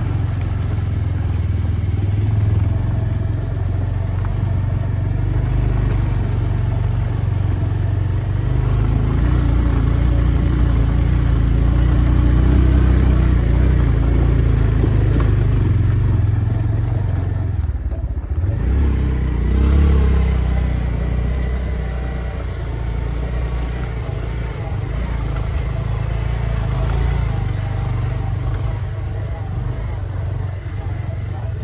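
Diesel engine of a backhoe loader running with a steady low rumble. There is a brief dip about two-thirds of the way through, then a short rise in pitch like a light rev.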